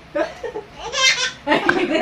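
Laughter in a small room: a short laugh about a second in, then a run of rapid, repeated laughing from about a second and a half on.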